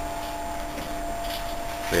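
Steady background hum and hiss with two faint steady tones, with no distinct event.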